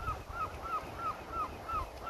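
A bird calling a rapid series of short, repeated notes, about five a second, over wind noise on the microphone.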